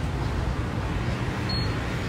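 Steady low rumble of convenience-store room noise, with a faint short high beep about one and a half seconds in.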